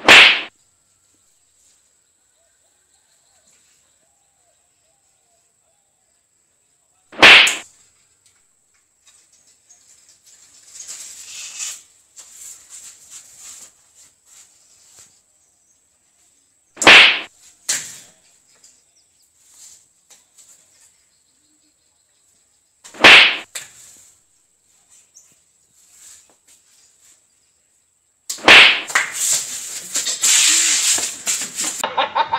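Hand slaps on the heads and backs of people squatting in a row: five loud, sharp smacks spaced several seconds apart, the last one followed by a brief noisy scuffle near the end.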